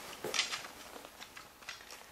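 Faint handling sounds: a few light taps and short rubbing scrapes of a hand on a wooden board.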